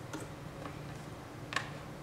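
A few faint, sharp clicks from a computer keyboard and mouse as a web search is entered, the loudest about one and a half seconds in.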